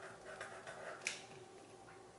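Faint strokes of a felt-tip marker writing on paper, with a light sharp click about a second in.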